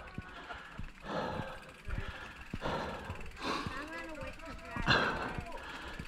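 Heavy breathing from a mountain-biker riding hard downhill, a breath about every second, over tyre noise and knocks of the bike on a rough dirt trail. A faint voice-like sound comes briefly near the middle.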